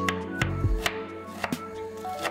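Chef's knife chopping onion on a wooden cutting board: a run of sharp taps, about three a second, over background music.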